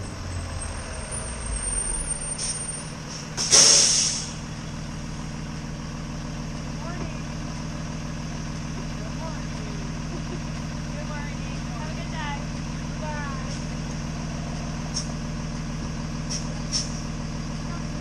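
A school bus pulls up and stops, with a loud air-brake hiss about three and a half seconds in, then stands idling steadily.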